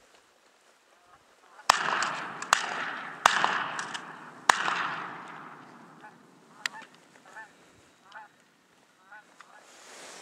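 Four sharp shotgun bangs in quick succession over about three seconds, each trailing off in a long echo. After them, a few short separate honks from flying geese.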